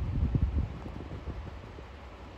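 Vehicle driving along a road: low rumble of the moving car, with wind buffeting the microphone, loudest in the first half second and settling to a steadier rumble.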